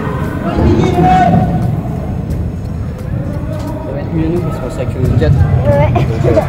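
Indistinct voices and chatter in a large indoor sports hall, over a steady low background din.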